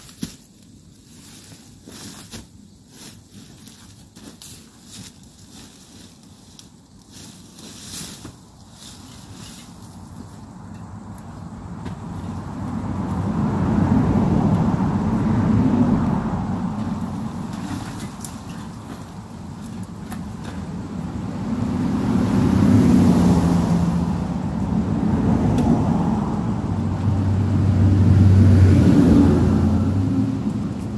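Road traffic passing on a highway: three vehicles swell up and die away in turn through the second half, each pass louder than the ground sounds. Before them, quieter rustling and crackling of footsteps and a pushed bicycle on dry bark mulch and leaf litter.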